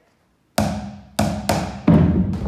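Sticks striking bucket drums and hand drums in a call-and-response percussion rhythm: four sharp hits starting about half a second in, each ringing out in the room.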